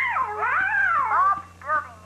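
A cartoon cat's voiced meow: one long, wavering call that rises and falls in pitch, then a short falling meow near the end.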